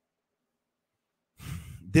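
Dead silence for over a second, then a man's audible breath, a sigh-like in-breath, just before he starts talking again.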